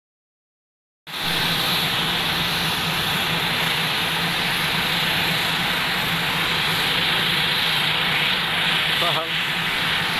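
Turboprop engines of a Basler BT-67, a DC-3 converted to Pratt & Whitney PT6A turbines, running with a loud, steady noise and a low hum. The sound starts suddenly about a second in.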